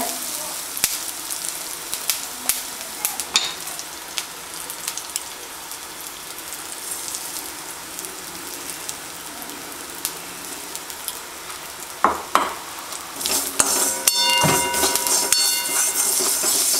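Mustard seeds, urad dal, curry leaves and dried red chillies sizzling in hot oil in a metal kadai, with scattered clicks. A perforated steel ladle scrapes and clatters against the pan as it stirs, loudest near the end.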